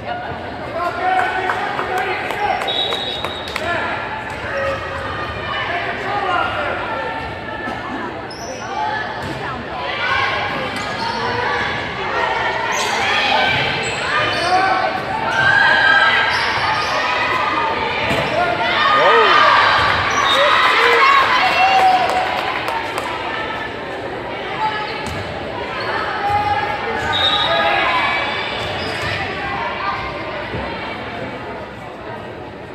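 Indoor volleyball play: sharp hits of the ball off hands and the hardwood gym floor, among players' calls and spectators' voices echoing in the large hall. The voices grow louder around the middle.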